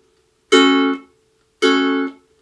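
Ukulele playing a palm-muted reggae skank strum with upstrokes: two chords about a second apart. Each rings for about half a second before the palm on the strings cuts it off sharply.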